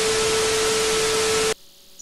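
Television static hiss with a steady tone running under it, a colour-bars glitch sound effect; it cuts off suddenly about a second and a half in.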